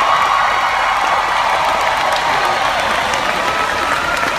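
A large crowd cheering and applauding steadily, with shouts and whoops over the clapping.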